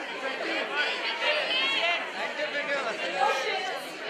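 Speech only: several voices talking over one another in a large hall, chatter around a woman speaking into a podium microphone.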